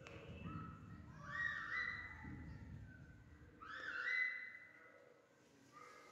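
An animal's whistled call, a note that rises and then holds, heard twice about two and a half seconds apart. A low rumble lies under the first half.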